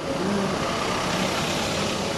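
Van engine running as the van pulls away: a steady engine and road noise.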